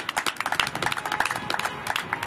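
A few people clapping: scattered, irregular hand claps.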